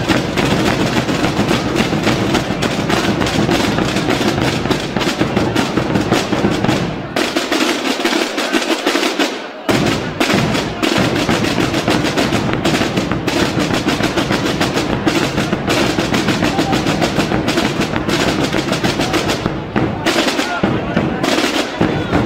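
A corps of Aragonese Holy Week drums, tambores (snare drums) and bombos (large bass drums), playing a fast, dense pattern of strokes and rolls. For about two seconds, a third of the way in, the bass drums drop out and only the snare drums play, then the bass drums come back in.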